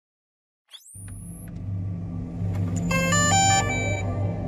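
Title-card sound effect: a short rising whoosh, then a low rumbling hum that swells in loudness, topped about three seconds in by a quick run of bright, stepped electronic tones.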